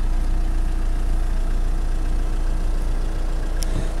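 Renault Megane 1.5 dCi four-cylinder diesel engine idling steadily, a low even hum heard from inside the car's cabin.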